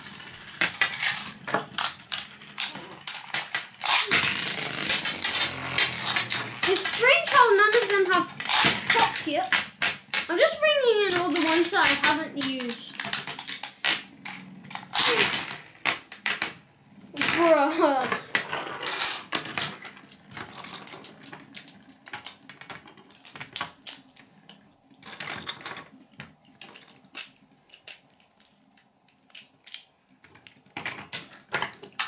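Several Beyblade spinning tops clashing and skittering against each other in a plastic tray: a fast, irregular run of sharp clicks and knocks. The clicks are densest in the first two-thirds and thin out toward the end as more of the tops stop.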